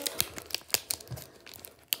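Foil wrapper of a Pokémon Paldea Evolved booster pack crinkling in the hands as it is worked open, in scattered sharp crackles.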